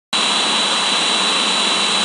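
Steady, loud hiss with a constant high-pitched whine running under it, starting abruptly just as the recording begins.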